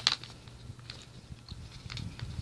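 Crinkling foil-laminate packaging of an MRE pouch being tugged at its tear notch, which will not tear: a sharp crackle at the start, then a few fainter crackles.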